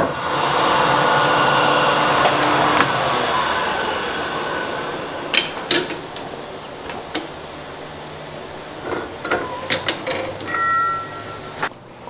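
Metal lathe starting with a click and running for a few seconds, turning metal off a crankshaft counterweight to balance it, then winding down. Scattered sharp metallic clicks and knocks follow as the machine is stopped and handled.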